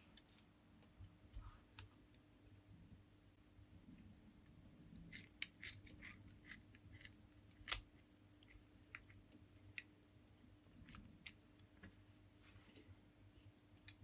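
Kitchen scissors snipping open a whole fish's belly: faint, scattered clicks of the blades, busiest in the middle, with one louder snip a little past halfway.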